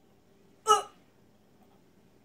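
A single short, sharp strained grunt from a boy struggling through a sit-up, about two-thirds of a second in.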